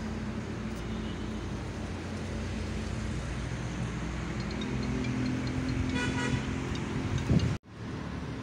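Road traffic: a motor vehicle's engine drones steadily and grows louder, rising sharply in pitch just before the sound cuts off suddenly.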